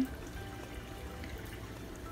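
Soft background music over a low, steady trickle of water in a saltwater aquarium.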